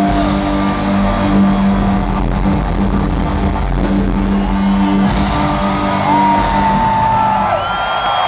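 Rock band playing live in an arena: a sustained closing chord with cymbal crashes and long high notes that slide up into pitch, over a crowd whooping. The chord stops near the end, leaving the crowd cheering.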